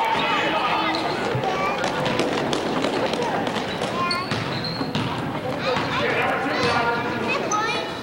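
Basketball game sounds: a busy mix of spectators' and players' voices, with a basketball bouncing on the court floor as it is dribbled.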